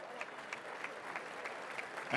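Arena audience applauding: a fairly faint, even wash of clapping with a few sharper single claps standing out.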